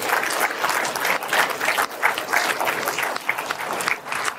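Audience applauding: dense, steady clapping from many hands.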